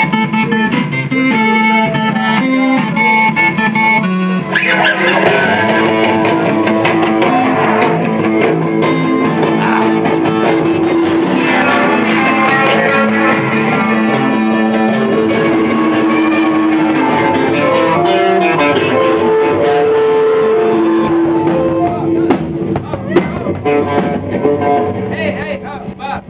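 Garage punk band playing live: a distorted electric guitar riff at first, then drums and the full band come in about four seconds in. The playing breaks off about four seconds before the end, leaving a few scattered drum and guitar hits.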